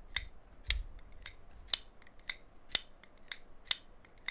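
QSP Penguin button-lock pocket knife worked open and shut over and over on its ceramic bearings, with about eight sharp, solid clicks, roughly two a second.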